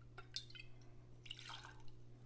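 Faint pouring and dripping of vodka from a bottle into a small plastic jigger and a glass, with a few small clicks and a short trickle about a second and a half in.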